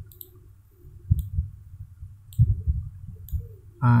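Computer mouse clicking: about half a dozen short, sharp clicks spaced irregularly, with a few soft low thuds in between.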